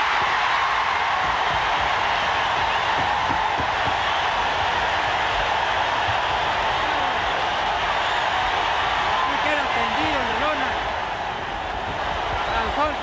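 Arena crowd cheering and shouting without a break at a boxing knockout, with a few single voices standing out near the end.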